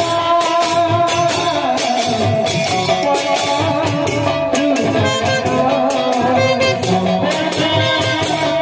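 Live kirtan music: a brass horn plays a sustained, wavering melody over a barrel drum and clashing hand cymbals that keep a steady beat.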